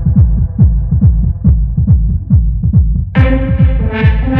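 Techno track with a steady four-on-the-floor kick drum, a little over two beats a second, under a muffled, low-pass-filtered synth; about three seconds in the filter opens suddenly and brighter synth chords come in.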